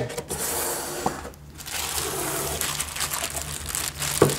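Packaging being handled by hand: plastic wrap and cardboard rustling and rubbing as a wrapped watch box is lifted out of its outer box. The rustle dips briefly about a second and a half in.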